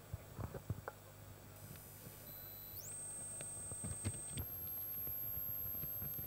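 Faint background noise: a low steady hum with a few soft knocks, and a thin high-pitched electronic tone that glides up in pitch about three seconds in and holds. A second, higher tone joins just after four seconds.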